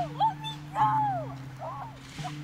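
A young woman's high, wordless cries as she is grabbed and lifted: four short rising-and-falling yelps, the longest about a second in.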